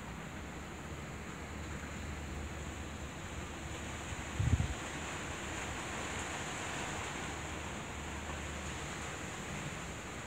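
Steady outdoor background hiss with wind on the microphone, and one brief low thump about four and a half seconds in.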